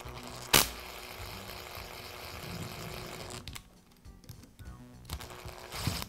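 Hand work on a router's power cord and cord clamp with a screwdriver. A sharp click comes about half a second in, then about three seconds of even rustling noise, then lighter scattered clicks and a knock near the end.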